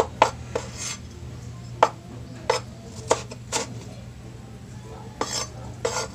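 Kitchen knife chopping on a bamboo cutting board: sharp knocks of the blade on the wood, irregular and in short runs with pauses, over a steady low hum.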